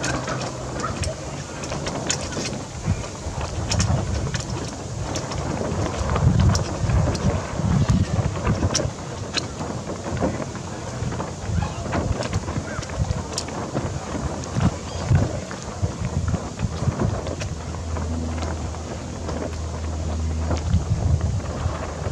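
Wind buffeting the microphone in uneven low rumbles, with scattered light clicks and rustles from hands working the rigging: a shackle and rope at the foot of a dinghy mast.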